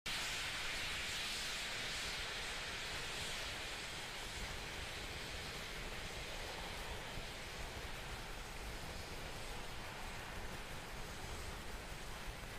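Steady outdoor hiss of pad ambience, brightest in the first few seconds and easing a little after about four seconds.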